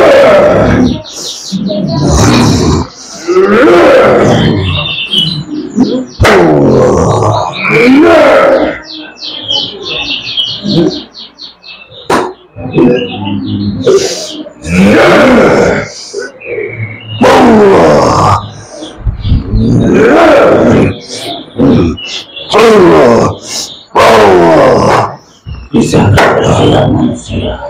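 A person's loud, drawn-out yells and groans, in bouts of a second or two and repeating every couple of seconds, from someone being treated against black magic (santet).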